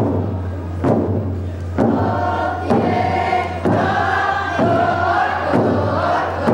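Tlingit dance song: a group of voices chanting together to a steady drum beat struck about once a second.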